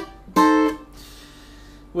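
Takamine acoustic guitar picked in a solo phrase: a chord sounded right at the start and cut short, then a louder chord about half a second in that rings and fades away.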